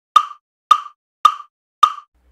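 Metronome count-in: four identical, evenly spaced clicks, about two a second, counting in the tempo before the band comes in.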